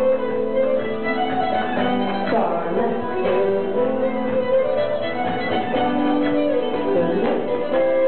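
Live fiddle and guitar playing a contra dance tune with a steady beat.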